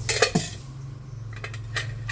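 Metal pressure-cooker lid being handled on a bench, clattering: a sharp knock and clink near the start, then a few lighter clicks.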